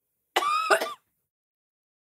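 A woman's short strained vocal noise, like clearing her throat, starting about a third of a second in and lasting about half a second: a reaction to the burn of a just-swallowed shot of tequila.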